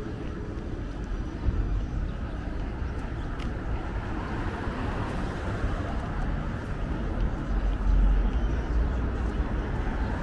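Outdoor city street ambience: a steady low rumble of traffic and wind on the microphone, a little louder about eight seconds in.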